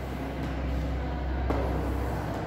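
A steady low rumble that swells slightly, with chalk drawing on a blackboard and one sharp chalk tap about one and a half seconds in.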